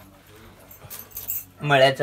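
Light metallic clinks of stainless steel plates, bowls and a spoon being handled during a meal, followed by a voice speaking near the end.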